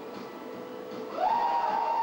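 Music playing from the arcade machines, with one long note that slides up about a second in and holds loud before falling away.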